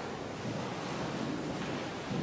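A congregation sitting down in a reverberant church, making a steady wash of shuffling and clothes rustling.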